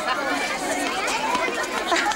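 Overlapping chatter of many voices, children among them, with no single voice standing out.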